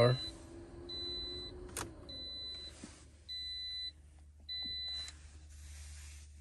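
Car warning chime beeping evenly, one high beep about every second and a bit, as the original key goes into the Toyota RAV4's ignition and is turned to the on position. A sharp click comes about two seconds in, and a low hum sets in and builds.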